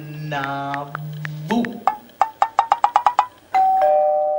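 An electronic two-tone doorbell chime, ding-dong, starting about three and a half seconds in: a higher note, then a lower one, both ringing out slowly. Before it a voice holds a long low note, then comes a quick run of short notes that speed up and rise in pitch.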